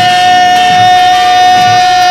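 Brass band music: one long note, held steady at a single pitch, over a low beat of about two pulses a second.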